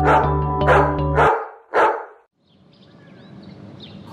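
A dog barks four times, short sharp barks about half a second apart, over music with a steady low beat that stops abruptly after about a second; then only faint background noise with a few high chirps.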